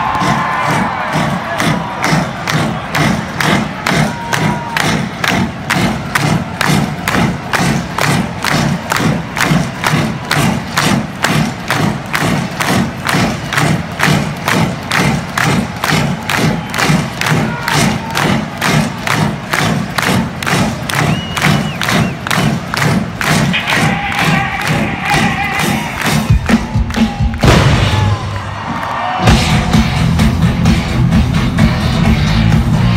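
A concert crowd cheering and shouting over a steady, even pounding beat from the stage PA, the build-up into the next song. Near the end the beat breaks off just before the full band comes in.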